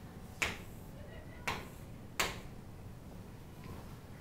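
Three sharp taps of chalk against a chalkboard in the first two and a half seconds, over a steady low room hum.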